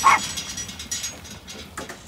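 A short, high animal call at the very start, dropping in pitch, followed by fainter scattered sounds.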